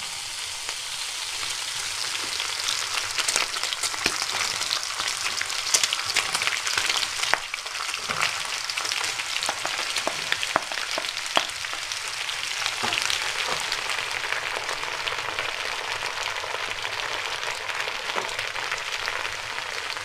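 Salo and sliced potatoes frying in a hot skillet: a steady sizzling hiss of fat, with scattered sharper crackles and clicks.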